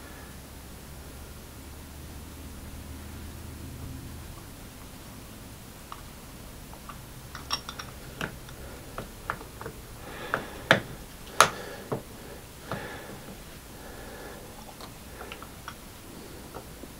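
Small metal clicks and taps from watch tools and a watch case back being handled on a workbench, scattered through the second half, with two sharper clicks a little after ten and eleven seconds in. A low steady hum sits under the first few seconds.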